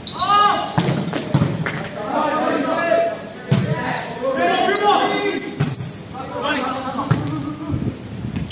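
Volleyball rally in a large echoing hall: the ball is struck several times with sharp slaps, and players shout calls to each other between the hits.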